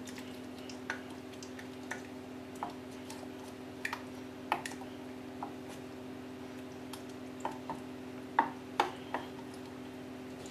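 Wooden spoon stirring thick peanut-butter paste being thinned with water in a stainless steel saucepan: irregular soft clicks and wet squishes as the spoon scrapes and knocks the pan. A steady low hum runs underneath.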